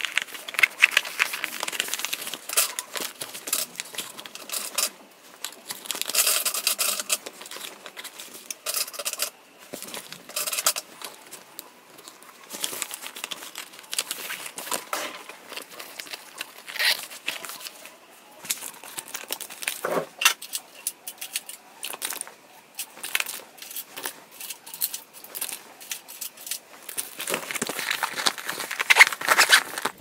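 Close handling noise from nail art brushes being slid into the elastic loops of a fabric brush holder in a kit bag: irregular rustling with many light clicks and knocks.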